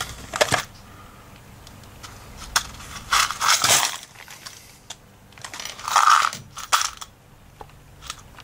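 Hands rummaging through clutter on a wooden desk in search of a small dropped part: objects shifted and knocked, with scattered clicks and two longer scraping rustles about three and six seconds in.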